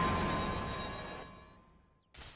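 The fading tail of an intro music sting, then, just past halfway, a quick run of high bird chirps: a tweeting-bird sound effect.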